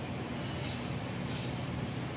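Steady low rumble of road traffic, with two short hisses about half a second and a second and a half in.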